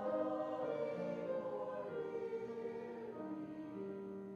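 Church choir singing a slow piece in long held notes.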